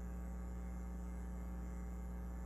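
Steady low electrical hum, unchanging, with no other sound.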